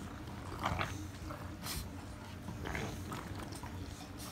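English bulldog puppies playing tug with a plush toy: a few short breathy dog noises, with the toy and bedding rustling.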